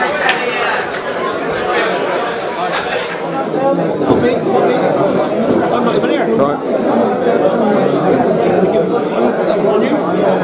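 Hubbub of many people talking at once in a large, echoing hall, continuous with no single voice standing out.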